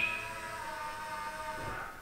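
Porsche Taycan power-folding side mirror motor whirring steadily as the car locks and the mirror folds in, stopping just before the end.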